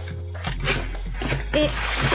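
Background music playing under the rustle of a cardboard box being handled and opened, with a noisy stretch about half a second in and again near the end.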